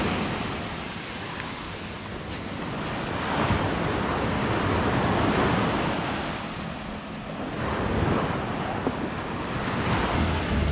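Small sea waves breaking and washing up a pebbly beach, swelling and fading in slow surges.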